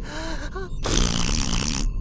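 A cartoon squirrel's wordless squeaky whimpers, rising and falling in pitch, followed by a long, loud gasp lasting about a second.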